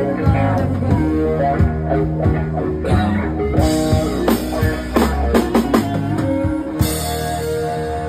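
Live rock band playing: electric guitar over a drum kit keeping a steady beat, with singers on microphones.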